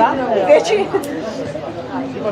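Spectators chattering, several voices overlapping.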